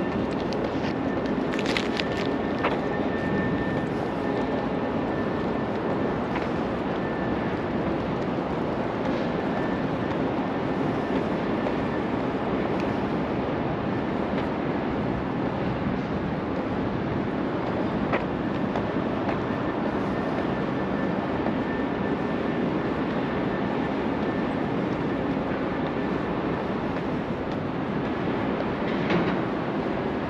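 Steady outdoor city background noise: an even rumble with a faint high thin tone that comes and goes. A few sharp clicks are scattered through it.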